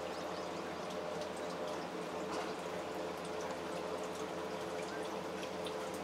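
Steady hissing background noise with a faint, even hum and scattered faint high-pitched chirps or ticks.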